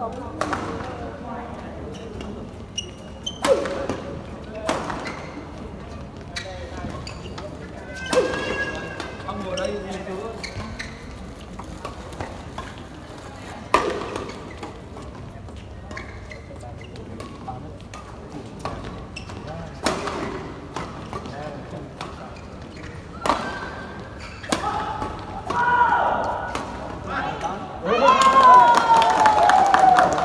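Doubles badminton rally in a large hall: sharp racket strikes on the shuttlecock every second or few, with players' footwork and voices, and a louder call with a falling pitch in the last two seconds.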